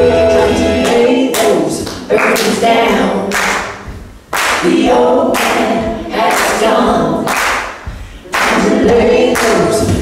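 A woman singing over layered, choir-like a cappella vocal harmonies, built up by live looping, with sharp percussive vocal hits cutting in at irregular intervals.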